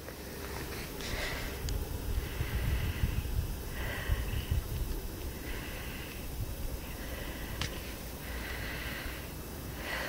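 Low wind rumble on the microphone, with a person breathing close to it, about five breaths.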